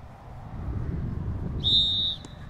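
Referee's whistle: one short, high blast of about half a second near the end, over a low rumble.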